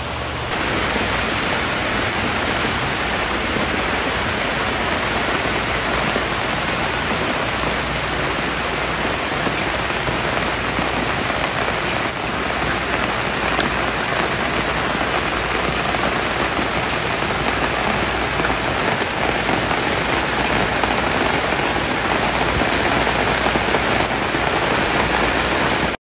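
Steady rain falling on an umbrella canopy.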